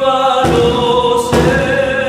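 Two male voices singing an Argentine folk song together in long held notes, accompanied by a strummed acoustic guitar and a small hand drum, with two accented strokes about a second apart.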